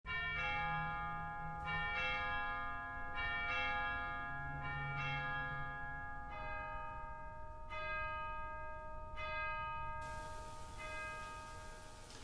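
Bells struck in a slow series, each stroke ringing on and fading under the next. The early strokes come in quick pairs, then single strokes, dying away near the end.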